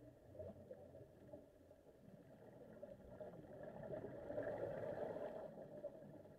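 Underwater ambience heard through a camera housing, with a rushing swell of scuba exhaust bubbles from a regulator that builds over the second half and fades near the end.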